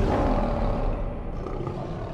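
A lion roar sound effect, deep and fading gradually.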